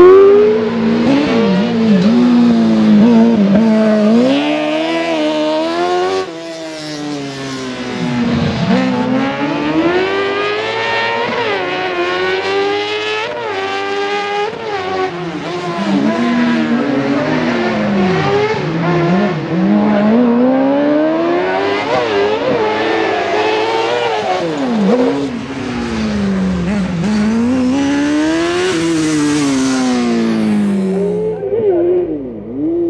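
Small rally sprint race car's engine revving hard, its pitch rising and falling again and again as it accelerates and slows through the course.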